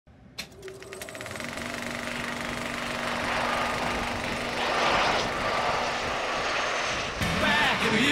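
Cinematic intro sound effect: a click and a quick rattle, then a noisy swell that builds in loudness over several seconds under one held low tone. It breaks off near the end as voices come in.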